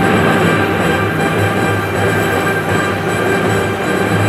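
Steady mechanical rattle and rumble of the Grand Cross Chronicle medal-pusher machine running in a busy arcade, with the machine's game music underneath as its jackpot chance sequence begins.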